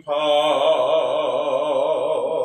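A man singing one long held note with a steady vibrato, the note starting just after a brief breath at the beginning.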